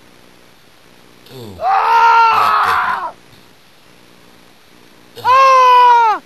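Two long, high-pitched play-acted screams from a person's voice, one about two seconds in and one near the end that drops in pitch as it stops.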